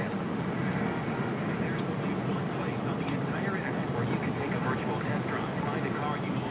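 Steady low road and engine noise inside a moving car's cabin, an even drone with no breaks.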